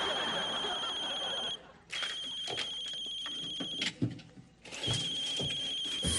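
Electronic phone ringtone: a high trilling tone sounding in three rings of about two seconds each, with short gaps between them. A few light knocks fall in the gaps.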